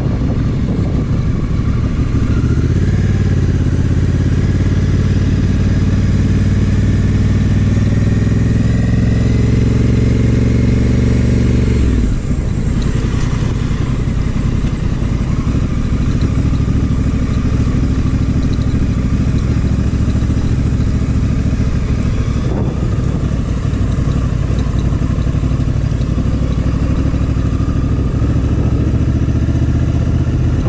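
Honda Africa Twin's parallel-twin engine under way on a dirt road. Its pitch climbs steadily for about ten seconds as the bike accelerates, drops suddenly about twelve seconds in, then holds steady.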